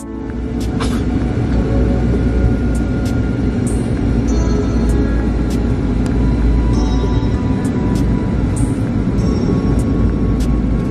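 Steady low rumble of an airliner in flight, with music playing over it and a few faint clicks.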